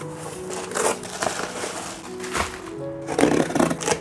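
Background music with a steady tune, over the crinkle and scrape of a small taped cardboard box being handled and torn open by hand, the crackling busiest in the last second.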